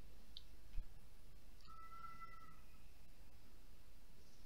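Quiet room tone with a low hum, one soft knock about a second in, and a faint steady tone lasting about a second midway.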